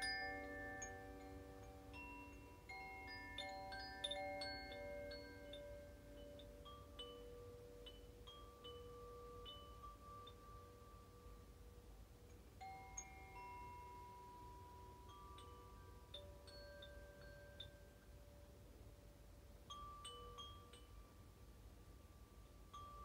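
Chimes ringing softly: scattered single notes at many pitches, each ringing on, busier and louder in the first few seconds and then thinning to fewer, quieter notes, over a faint steady low rumble.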